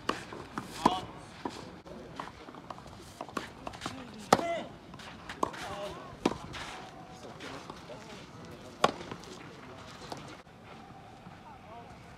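Tennis ball struck by rackets during a rally: sharp pops a second or more apart, about four loud ones, with player vocal sounds on some of the shots.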